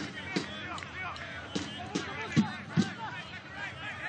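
Soccer match field sound: scattered shouts from players and spectators, with several thumps of the ball being kicked, the loudest two a little past the middle.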